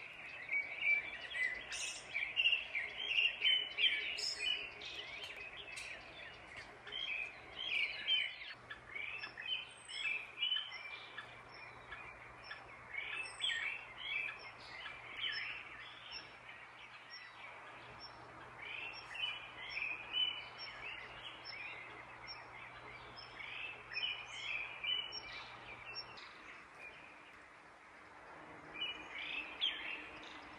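Several songbirds singing their evening song before going to roost: many short, high chirps and trills overlapping, busiest in the first few seconds, thinning out in the middle and picking up again later.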